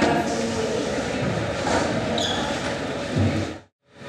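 Indistinct voices and room noise, cut off abruptly into dead silence shortly before the end by an edit.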